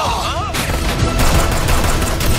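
Action-film sound effects of rapid, continuous gunfire, starting about half a second in, mixed over a dense soundtrack with faint steady tones underneath. A brief gliding sound comes just before the shots.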